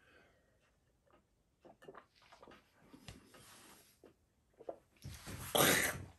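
A man sipping from a glass, with faint small mouth and swallowing sounds, then a loud breathy exhale about five seconds in.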